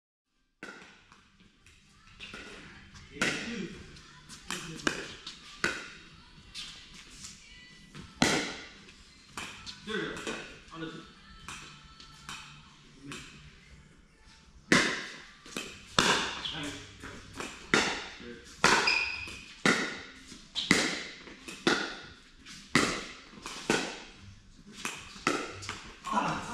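Pickleball paddles striking a hollow plastic pickleball, with bounces on the court. Sharp pops with an echo, scattered at first and then coming about once a second in a long rally through the second half.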